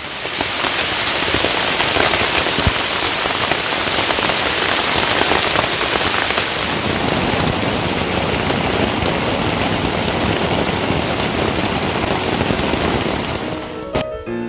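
Steady heavy rain, an even, dense hiss of falling drops.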